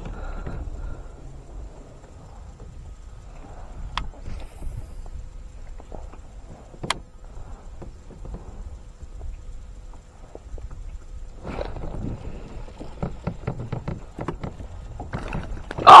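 Low, steady rumble of wind on the microphone with scattered light clicks and knocks from a baitcasting rod and reel being cast and worked, the clicks coming thicker in the last few seconds.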